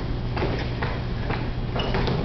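Faint knocks and bumps, about four in two seconds, from two boys play-fighting on a couch behind a glass window, over a steady low hum.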